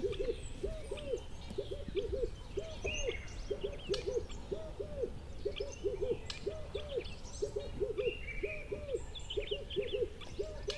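A chorus of birds: short, low calls rise and fall in pitch, several each second and often in pairs, with fainter high chirps and twitters above them.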